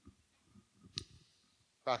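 A single sharp click about a second in, among faint low bumps of handling noise, typical of equipment being handled while a laptop is hooked up to a projector. A man's voice starts just before the end.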